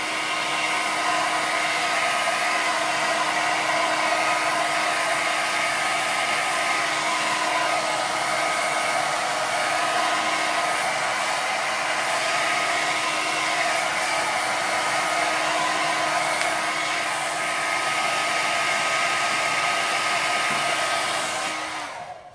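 Handheld hair dryer running steadily on a constant whir with a steady hum, blowing on a freshly painted wooden sign to dry the paint; it is switched off right at the end.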